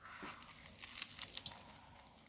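Faint biting into and chewing of a pita bread stuffed with hot dogs, with a few soft crackles about a second in.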